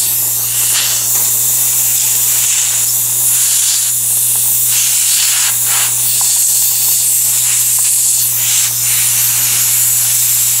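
Dental suction tip hissing steadily, with a low hum under it, while an air-water syringe rinses the acid etch off the molars. A few short, stronger spurts of spray are heard.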